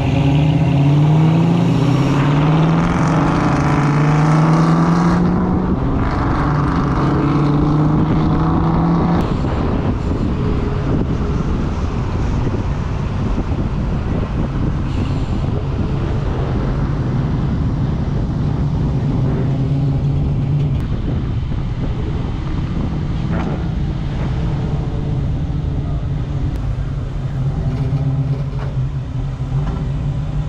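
Car engine accelerating away from a stop, its pitch climbing and dropping back through several gear changes in the first few seconds. It then settles into a steady cruise with road noise.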